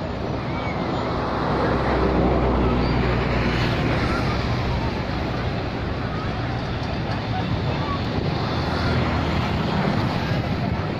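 Ocean surf breaking steadily on a sandy beach, with a low rumble that swells twice: once a couple of seconds in and again near the end.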